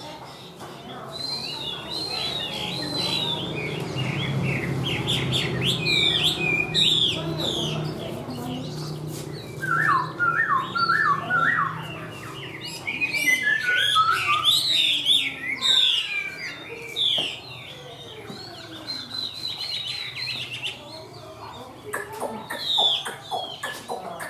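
Chinese hwamei (melodious laughingthrush) singing a long, varied song of quick whistled phrases, with a run of repeated lower, falling notes around the middle.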